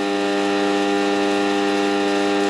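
Steady electrical hum from the HHO generator's power supply and bridge rectifiers under heavy current: one unchanging buzzing drone.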